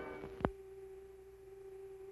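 A faint single held tone left over from the fading opening music, with one sharp click about half a second in.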